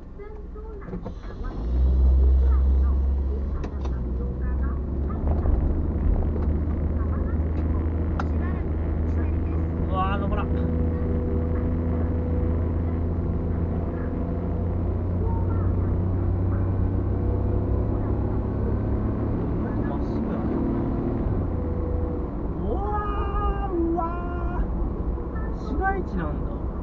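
Car engine and road noise heard from inside the cabin. The car pulls away from a stop about two seconds in, and then a steady low driving rumble continues as it cruises.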